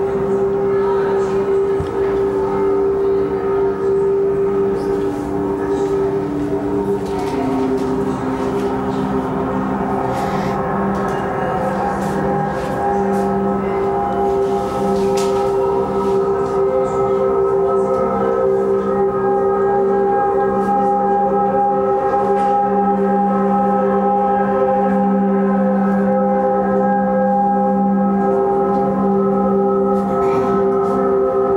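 Film soundtrack of a sustained, droning chord of low held tones, one of them stepping down in pitch about seven seconds in, played through the room's loudspeakers.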